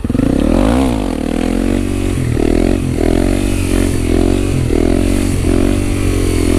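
Honda CRF250 supermoto's single-cylinder four-stroke engine, revved in a quick rise and fall just under a second in, then held at high revs with small dips in pitch as the rider lifts the front wheel into a wheelie. The owner suspects a fuel-system problem has cost the engine power.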